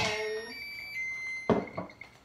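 A sharp knock at the start, then faint high thin ringing tones, while vegetable oil is handled and poured from a plastic bottle into a measuring cup.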